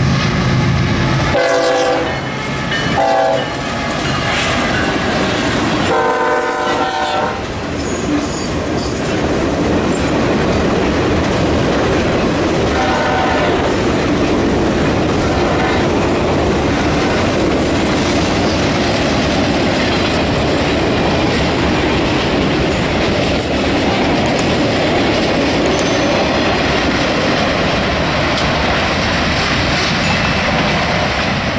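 Norfolk Southern diesel locomotive horn blowing the grade-crossing signal: long, long, short, long, the last blast ending about seven seconds in. Then a freight train rolls past, its wheels clattering steadily over the rail joints.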